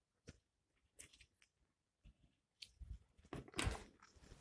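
Faint, scattered clicks and taps of plastic game pieces and cards being handled on a tabletop, with a louder short cluster of handling noises near the end.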